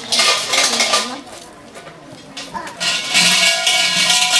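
Shrine suzu bell jangling as its thick rope is shaken by hand, a metallic rattling ring in two bursts: a short one at the start and a longer one from about two and a half seconds in.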